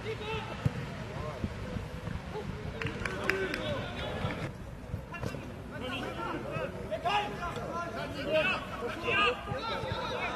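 Footballers calling and shouting to each other across the pitch during open play, indistinct, louder in the second half, with a few sharp knocks of the ball being kicked.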